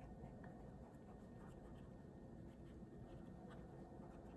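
Faint scratching of a pen writing on planner paper, a few short strokes scattered through a near-silent room.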